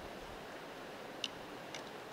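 Steady rush of high creek water, with one sharp tick a little past halfway and two fainter ticks near the end.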